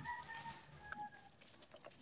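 Faint chicken calls: a few short held notes in the first second or so, then near quiet with faint rustles of a plastic-wrapped package being handled.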